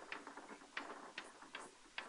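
Writing on a board: about ten faint, irregular taps and clicks as the lecturer writes.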